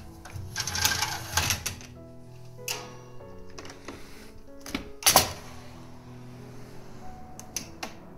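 A window being unlatched and opened: the lever handle and frame click and knock several times, with one sharp clack about five seconds in, over steady background music.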